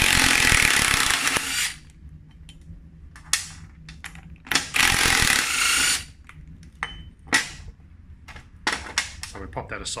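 Cordless power driver spinning out the bolts that hold a toothed drive gear onto a wheel hub. It runs in a burst of about a second and a half at the start, a short one, then another long burst around the middle. After that come a few sharp metallic clicks and knocks as loose parts are handled on a metal plate.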